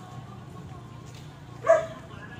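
A dog barks once, loud and short, near the end, over a low murmur of voices.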